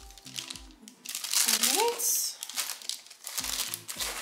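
Paper crinkling and rustling as paper-wrapped soap samples and crinkle paper shred are handled in a cardboard shipping box, over background electronic music with a steady bass beat.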